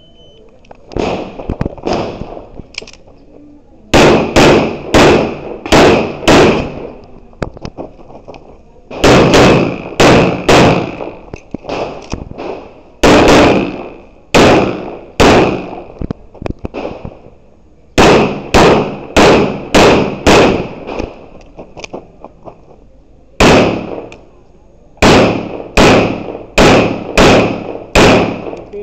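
Semi-automatic pistol shots fired in quick strings of five to seven, with gaps of about two seconds between strings, from about four seconds in. A few quieter shots come in the first seconds.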